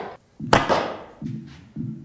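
A sharp thunk about half a second in, an arrow striking a foam 3D deer target, with a ringing tail. Then background music with a slow throbbing bass beat begins.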